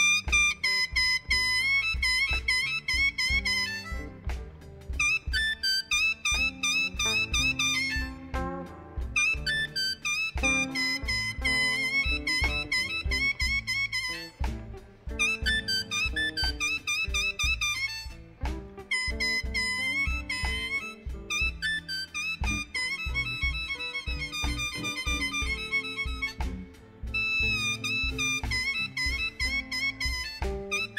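Electric blues band playing an instrumental break, led by an amplified blues harmonica with bending notes and short phrases over bass and a steady drum beat.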